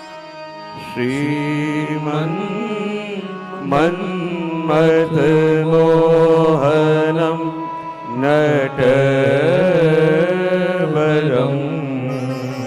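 A voice singing a slow devotional melody with long, ornamented held notes in three phrases over a steady instrumental drone.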